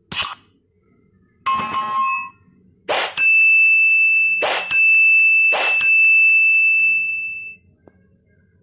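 Animated subscribe-button sound effects: a short click, then a bell ding about a second and a half in, then three whooshing pops about 3, 4.5 and 6 seconds in over a high ringing tone that fades out near the end.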